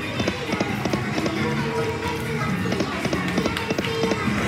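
Double Blessings penny video slot playing its electronic music and reel-spin sound effects as the reels spin and stop, with many short clicks through it.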